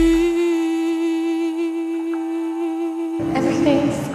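Song soundtrack: a female singer holds one long steady note over thin backing. The fuller accompaniment comes back in about three seconds in.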